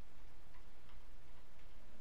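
A few faint, sparse ticks over a steady low hum.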